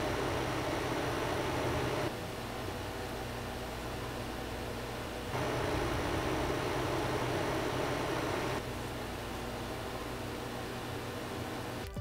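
LG window air conditioner running: a steady fan rush with a low hum under it. The level steps down, up and down again every few seconds as the microphone is turned with its front, then its back, toward the unit.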